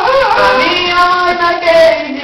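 A high-pitched singing voice cuts in suddenly and loudly, holding long notes.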